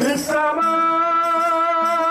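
Qaswida singing: one long note held with a slight waver, beginning about a third of a second in, over a lower accompanying line.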